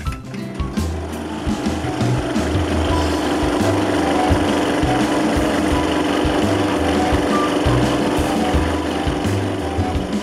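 Scroll saw running steadily as its blade cuts into a thick block of wood, heard under background music with a bass line.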